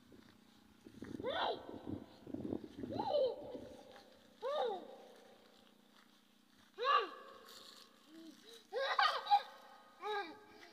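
A young child's voice making short sing-song calls, each rising and falling in pitch, five or so a second or two apart, over a steady low hum.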